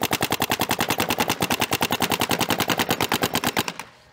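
Field One Force electronic paintball marker firing a rapid, evenly paced string of shots, about a dozen a second, that stops just before the end.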